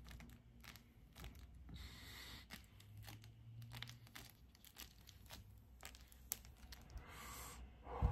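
Near silence, with faint breathing as someone draws on a lit joint and blows out smoke. There are soft breathy hisses about two seconds in and again near the end, and a few faint ticks.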